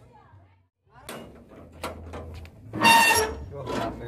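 Metal locking handles and latches on a box truck's rear cargo doors being worked, giving sharp clicks and a loud metallic clank about three seconds in, with men's voices. It starts after a brief silence.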